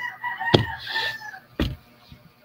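A rooster crowing once: a single long, level call of about a second and a half, fainter than the nearby talk. A short click sounds about half a second in.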